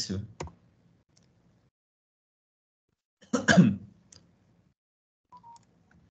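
Mostly quiet pause with a single computer mouse click near the start and a brief vocal sound about three seconds in.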